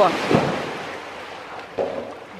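A polar bear cub leaping into a pool: a loud splash just after the start, then the water churning and settling as it fades.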